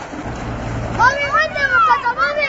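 Children splashing in a shallow ornamental pool: a rough hiss of splashing water in the first second, then high-pitched children's shouts and calls.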